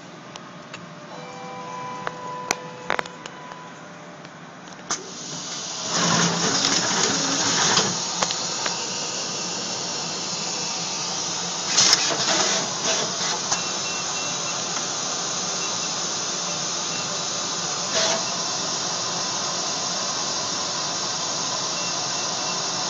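Machinery running with a steady hiss. It starts quieter, with a few short beeps and sharp clicks, then grows louder about five seconds in, with brief surges now and then.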